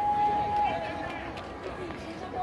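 A person's voice holding one long high note for under a second, then wavering in pitch, over outdoor crowd voices.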